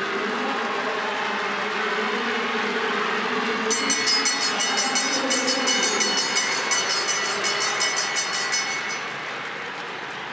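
Stadium crowd noise, with a hand bell rung rapidly, about three strokes a second, from a few seconds in until near the end. It is the bell that signals the final lap of a track race.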